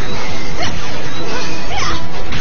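Action-show fight sound effects over loud background music: falling-pitch laser blaster zaps and whooshes, leading into a sparking hit.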